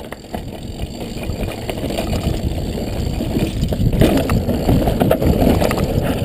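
Mountain bike riding over a dirt trail: tyres rolling and crunching on dirt and roots, with many quick rattles and knocks from the bike over bumps and wind rumbling on the microphone. The noise grows louder over the first few seconds.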